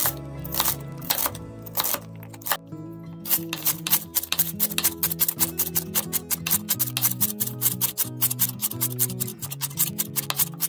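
Chef's knife chopping celery on a wooden cutting board. A few spaced cuts come in the first three seconds, then quick, even chopping at about five or six strokes a second, over background music.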